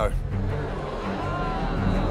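Low, steady rumbling drone, a suspense sound effect in an edited TV soundtrack, with a faint higher swell about halfway through.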